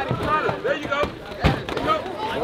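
Men shouting "turn it" at ringside, with one sharp thud about one and a half seconds in, a blow landing while the two fighters are clinched.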